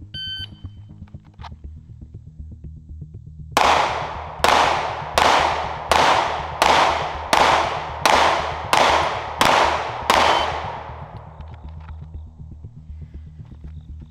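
A shot timer's short start beep, then ten pistol shots fired at an even pace of a little under a second apart, beginning about three and a half seconds in, each with a short ringing echo.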